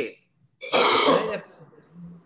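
A person clears their throat once, a short burst under a second long starting about half a second in.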